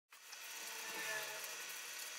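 Felt-tip marker writing on paper: faint scratching with a few brief squeaks.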